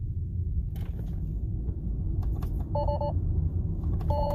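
Steady low road rumble inside a slow-moving Tesla's cabin. Near the end comes a short, rapidly pulsing two-note warning chime from the car: Autopilot refusing to engage in this area.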